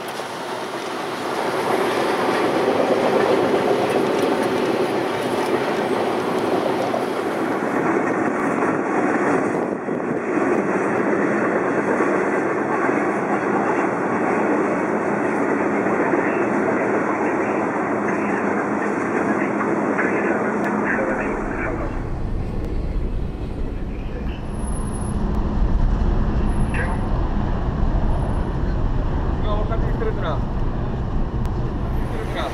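Double-stack container freight train running past, a steady rumble of its cars on the rails. About two-thirds of the way through this gives way to a lower, duller rumble.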